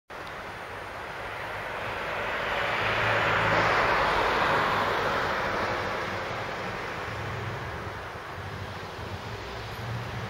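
A vehicle passing on a city street: broad traffic noise that swells to a peak about four seconds in, then slowly fades.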